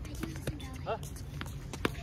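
Tennis ball bouncing once on the hard court about half a second in, then a racket hitting the ball near the end with a single sharp crack.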